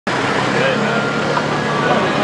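A motor vehicle engine running steadily, with people talking over it.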